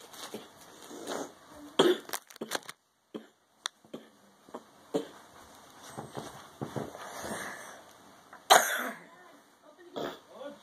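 Clicks and short crinkly rustles of a plastic-wrapped Swiss cake roll being handled, with one loud harsh burst about eight and a half seconds in.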